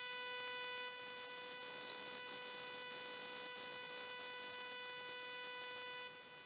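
A steady electronic buzz, one pitched tone with a stack of overtones above it, holding level and then cutting off suddenly near the end.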